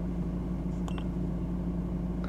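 Steady low hum inside a car's cabin, with one faint short click about a second in.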